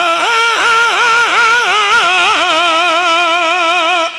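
A zakir's voice through a microphone, singing one long held note in melodic recitation style, its pitch rippling up and down throughout; the note breaks off at the very end.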